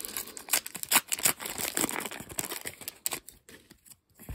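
Match Attax trading-card pack wrapper being torn open and crinkled in the hands: a dense run of crackling and rustling, busiest in the first three seconds and thinning out near the end.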